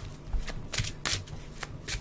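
Tarot cards being shuffled and handled: a run of short, sharp card flicks, several a second.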